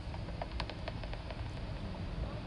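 Handheld bat detector held skyward, a few short irregular clicks over a steady hiss: bat echolocation calls made audible by the detector.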